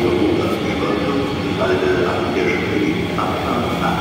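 Regional passenger train moving along a station platform: the steady rumble and hum of the carriages rolling past, with voices murmuring under it.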